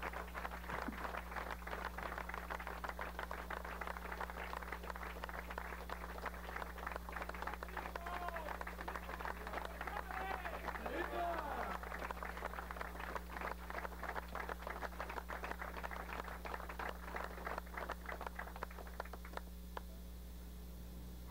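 Audience applauding steadily after a speech ends, many quick claps blending together, with a few voices calling out about eight to eleven seconds in. The applause dies away just before the end.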